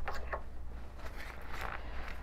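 Paper towel rubbed along a dental unit's handpiece hose by a gloved hand, a soft rustling scrape in two short stretches, over a low steady hum.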